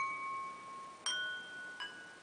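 Chime tones struck one at a time at different pitches, each ringing on and slowly fading: one at the start, a new one about a second in and a softer one near the end.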